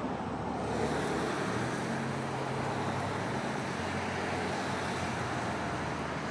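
Steady rushing outdoor background noise with no clear events, with a faint low hum for a couple of seconds starting about a second in.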